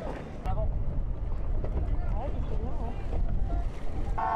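Steady low rumble of motorboats escorting a sailboat on the water, with voices calling out over it.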